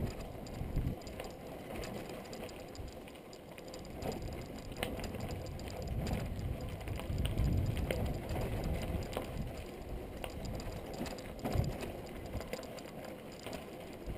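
Mountain bike riding over a dry dirt singletrack: tyres rolling on the gravelly dirt with the bike rattling and giving scattered clicks and knocks over bumps, under a low rumble of wind and ground noise. It gets louder for a few seconds in the middle, and there is a sharp knock shortly before the end.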